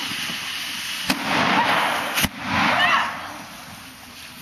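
A pyrotechnic smoke charge going off: a sharp crack about a second in and a louder bang about a second later, each followed by a loud hissing rush that dies away near the end.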